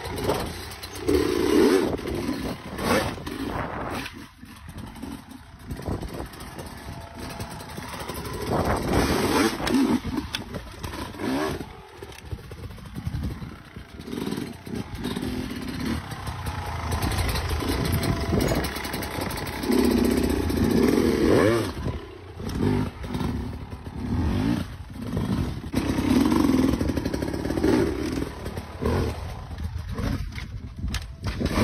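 Dirt bike engine revving in repeated surges and falling back between them as the throttle is blipped to hop the bike over obstacles, with occasional knocks as the wheels land.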